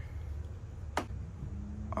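A single sharp click about a second in, from hand tools and fasteners being handled while the fairing bolts are taken out, over a steady low hum.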